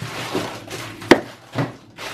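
Rummaging in a freezer drawer: frozen food packets being pulled out and shoved back, with a few knocks, the sharpest about a second in.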